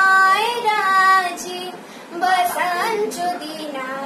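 A young girl singing without accompaniment, with long held notes at first, a brief pause about halfway, then more singing.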